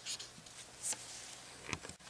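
Felt-tip marker writing on paper: faint scratchy pen strokes, with a short stronger stroke about a second in and another near the end.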